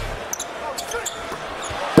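Arena crowd noise with a basketball bouncing on the hardwood court, a few short faint high squeaks in between.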